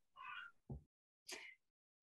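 Near silence on a video call, broken by three faint, brief sounds: a short pitched call about half a second long, then a low thud, then a brief higher sound.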